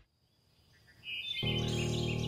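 Near silence, then birds chirping in short repeated calls from about a second in, joined by a sustained chord of background music.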